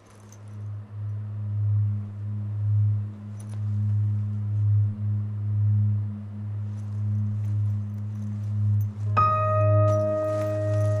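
Film score: a low sustained drone that swells and ebbs, joined about nine seconds in by a struck, bell-like note that rings on.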